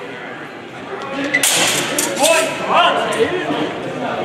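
A sharp clash about a second and a half in as two longsword fencers engage, followed by a raised shout, over echoing chatter in a large hall.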